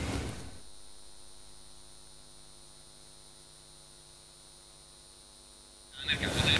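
Near silence carrying only a faint, steady electrical hum with its evenly spaced overtones and a faint high whine. The sound before it fades out over the first half-second, and sound cuts back in abruptly at the very end.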